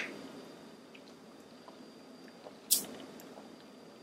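A person sipping a thick smoothie through a straw: mostly quiet, with one short wet mouth sound about two and a half seconds in.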